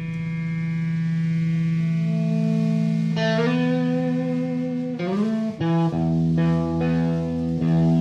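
Electric guitar and bass playing long held, droning tones through effects, with notes sliding up to new pitches about three and five seconds in and a low bass note coming in around six seconds.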